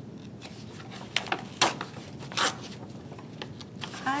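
Paper pages being pulled and torn away from a book's glued binding: paper rustling, with three or four short rips between about one and two and a half seconds in.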